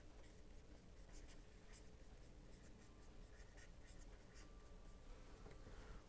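Near silence: faint scratching and light taps of a stylus writing a word on a pen tablet, over a low steady hum.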